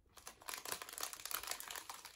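A plastic snack packet crinkling and crackling in the hands as it is handled and opened, in a quick irregular run of small crackles.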